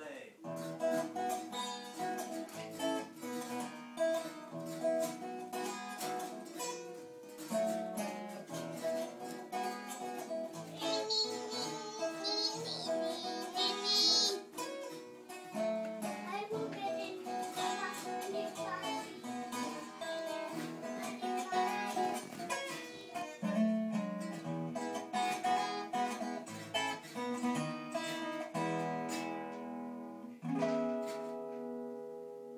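Acoustic guitar played continuously in a home duet, with a child's high voice singing along in places.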